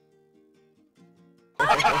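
Faint music of held plucked-string notes, then about one and a half seconds in a sudden burst of loud, warbling laughter.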